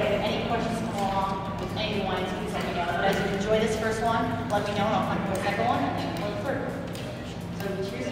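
Indistinct voices of a group talking in a large hall, over a steady low hum.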